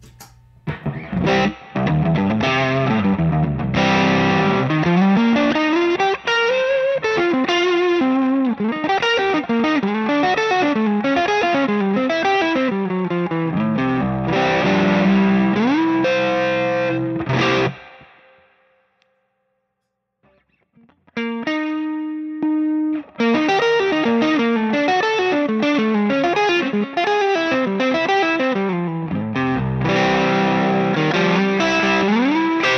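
Electric guitar tuned to C standard, played on the neck pickup through the original Cornerstone Gladio overdrive pedal into a Two-Rock amp: overdriven riffs and lead lines. The playing stops for a couple of seconds about eighteen seconds in, a few notes ring out, then it carries on.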